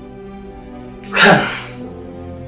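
A man lets out one sudden, loud sob about a second in, over soft, sad background music.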